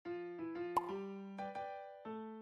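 Light background music of short, decaying keyboard-like notes, with a single short pop sound effect just under a second in.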